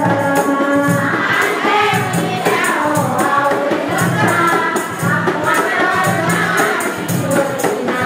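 Women singing together, one voice on a microphone, over a steady beat of drums and a jingling, tambourine-like percussion struck several times a second.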